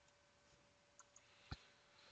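Near silence broken by a few faint clicks from a computer mouse and keyboard: two small ones about a second in and a sharper single click about a second and a half in.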